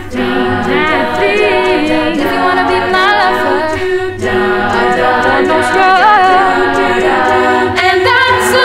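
A cappella vocal group singing live through face masks, several voice parts in harmony over a low sung bass line, with no instruments.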